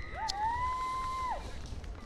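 A person whistling from the sideline in celebration of a try, one long note that slides up, holds for about a second and drops off, with a second fainter whistle above it.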